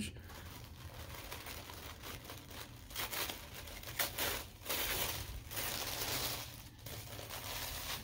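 Tissue paper and shredded paper filler crinkling and rustling as hands dig through a cardboard box, in uneven spurts that grow louder through the middle.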